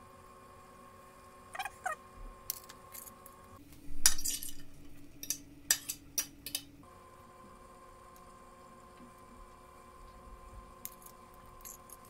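A metal fork mashing boiled potato on a textured glass plate and scraping it off, giving scattered clinks and scrapes of metal on glass. A quick cluster of clinks about four seconds in is the loudest, with lighter taps later.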